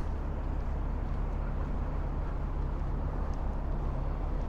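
A large engine running steadily at idle: a constant low drone over a faint background hiss.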